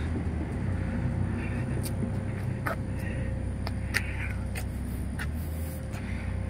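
Steady low rumble of road traffic, with a few faint clicks.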